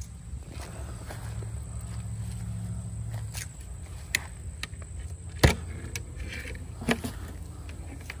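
Metal draw latches on a long Langstroth hive being pried open with a hive tool: several sharp metallic clicks and knocks, the loudest about five and a half seconds in, as the hinged hive lid is freed and lifted.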